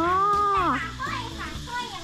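A single drawn-out vocal exclamation, about a second long and falling at the end, over quiet background music.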